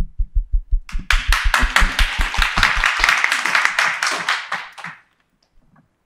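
Audience applause in a hall, growing from scattered claps into a full round of clapping about a second in and stopping abruptly about five seconds in.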